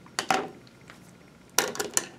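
Hairdressing tools handled close to the microphone: a short scratchy click about a quarter of a second in, then a quick cluster of clicks near the end.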